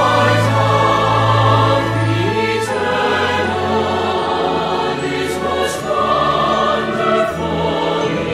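Mixed choir singing a hymn with orchestral accompaniment, the voices and instruments holding long chords that change every two or three seconds.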